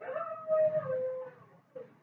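A high whining cry lasting about a second and a half, its pitch stepping down slightly, followed by a short second whimper near the end.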